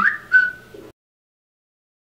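A woman's high-pitched, whistle-like "bye", gliding up in pitch and then held briefly; the sound cuts off to total silence just under a second in.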